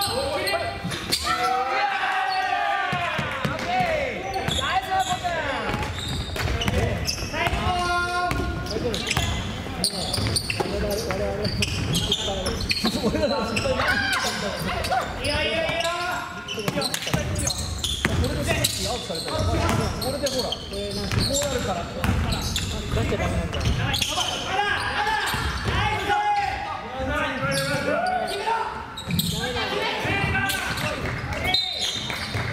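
Basketball bouncing on a wooden gym floor during play, with sharp knocks scattered throughout, and players' voices calling out in between.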